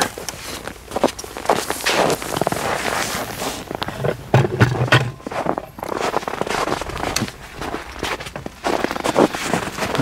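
Footsteps crunching in cold snow: a dense, irregular run of crisp crunches and knocks as someone walks.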